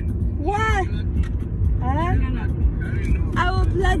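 Steady low rumble of a moving car heard from inside the cabin, with short bursts of voices over it.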